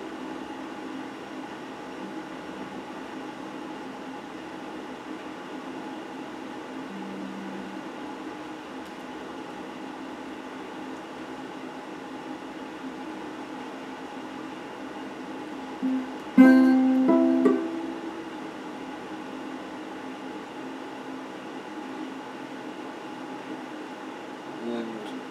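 Electric guitar played sparsely over a steady hum. A single low note sounds about seven seconds in, and a loud plucked chord comes about sixteen seconds in and rings out over a couple of seconds.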